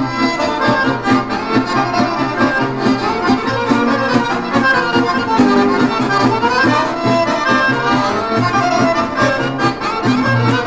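Accordion playing the melody in an instrumental passage of a folk song, over a steady band beat.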